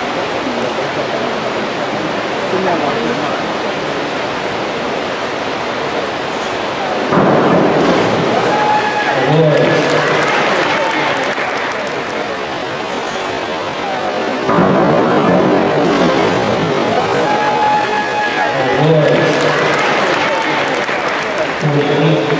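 Crowd noise echoing in an indoor pool hall, with cheering and shouting that breaks out suddenly about seven seconds in, after a dive, and again in much the same way about halfway through.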